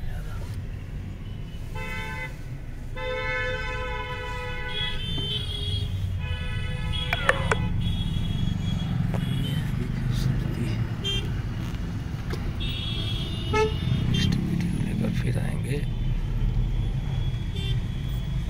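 Vehicle horns in stop-and-go traffic honking several times, some held for a second or more, over the steady low rumble of the car's engine and road noise heard from inside the cabin.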